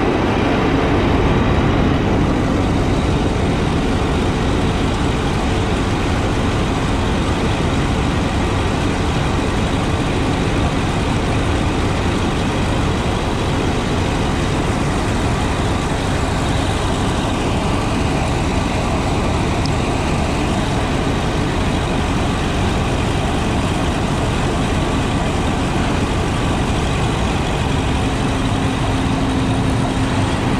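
Massey Ferguson MF 487 combine harvester running steadily, unloading grain through its extended auger into a trailer.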